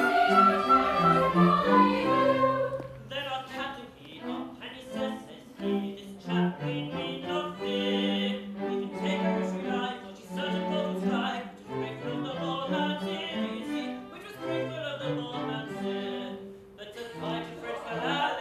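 Theatre orchestra playing light-opera music, with the chorus singing over it for the first couple of seconds before the instruments carry on alone.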